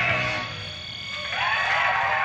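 A live rock band's song ends: the last notes ring on and fade. About a second and a half in, the audience starts cheering, with wavering cries over the first applause.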